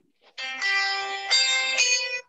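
Mobile phone ringtone playing a short tune of held notes, stepping to new notes a few times and then cutting off as the call is answered.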